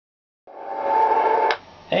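CB radio receiving on channel 28 (27.285 MHz): hiss and static from a skip signal rise, with a steady whistle running through them, and cut off with a click about a second and a half in as the transmission drops. A man says "Hey" at the very end.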